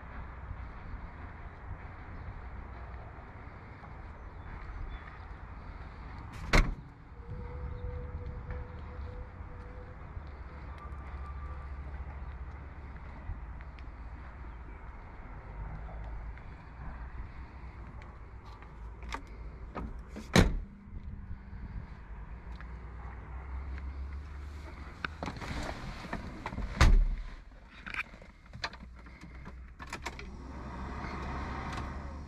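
Doors of a 1990 Volvo 240DL sedan being opened and shut, heard as three loud knocks about six, twenty and twenty-seven seconds in, with a few lighter latch and handle clicks between them, over a steady low rumble.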